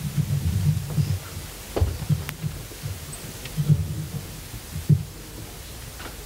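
Dull low thumps and rumbling from a stage microphone stand being handled and moved, with a few sharper knocks.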